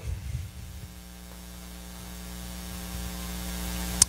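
Steady electrical mains hum with a faint hiss from the microphone and sound system, slowly growing louder.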